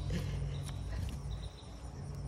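Faint rustle and ticks of persimmon leaves and fruit being handled on the branch, over a steady low hum.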